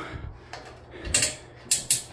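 Resistance lever on an Aussie Pro Runner curved manual treadmill being moved, clicking through its notches in two short ratcheting bursts: one about a second in, one near the end.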